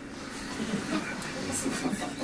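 A small audience laughing.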